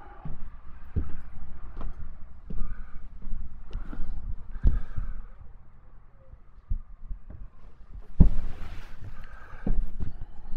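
Footsteps knocking on a motorhome's floor, roughly one a second with the loudest about eight seconds in, over a steady low rumble.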